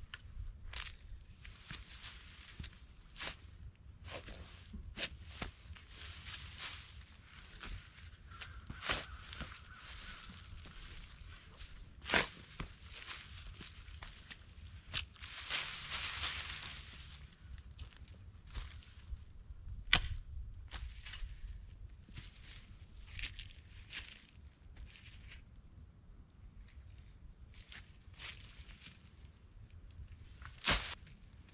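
Dry leaves and compost being shovelled and forked: rustling and crunching, with scattered sharp knocks and scrapes of the tools, the loudest about twelve and twenty seconds in, and footsteps.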